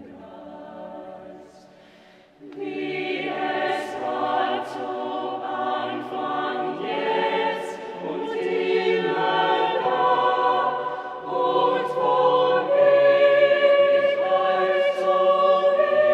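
Mixed-voice chamber choir singing unaccompanied: a soft passage thins out for a moment, then the full choir comes in louder about two and a half seconds in and keeps building.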